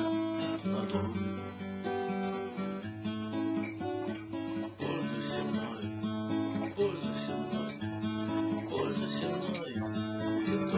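Steel-string acoustic guitar being strummed, with the chords changing about every second or so.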